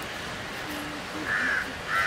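A crow cawing twice, once about a second in and again near the end, over steady outdoor background noise.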